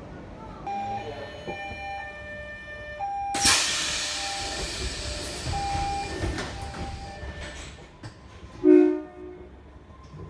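Monorail car at a station: a few steady electronic tones, then a sudden loud hiss about three seconds in that fades over the next few seconds, and a short loud pitched tone near the end.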